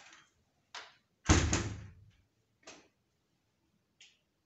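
A wooden interior door banging shut: a light click, then a loud double bang about a second in that dies away briefly, and a softer knock after it.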